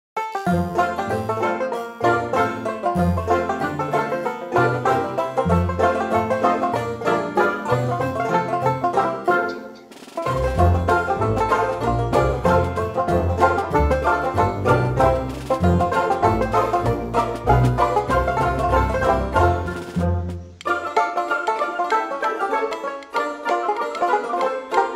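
Background music with quick plucked string notes over a bass line. The music dips briefly about ten seconds in, and the bass drops out near the end.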